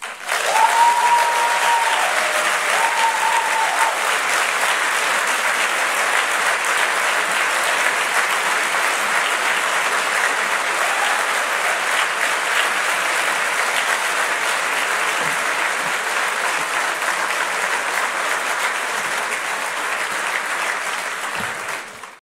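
Large audience applauding steadily in a big hall, starting abruptly as the speech ends and dying away near the end. Two brief high held tones sound over the clapping in the first few seconds.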